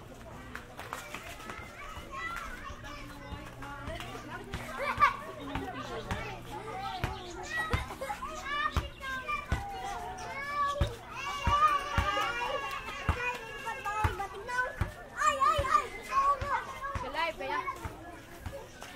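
A group of children chattering and calling out close around the microphone, their high voices overlapping and growing busier in the second half, with short knocks scattered among them.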